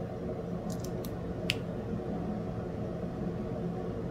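A steady low background hum with a few light, short clicks; the sharpest click comes about a second and a half in.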